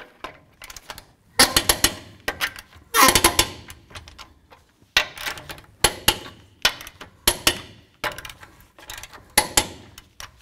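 Lug nuts being threaded and tightened onto a truck's wheel studs with a socket tool: sharp metallic clicks in short clusters, about one cluster a second.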